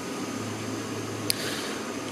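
Steady low hum and hiss of background room noise in an indoor showroom, with one short tick about a second and a half in.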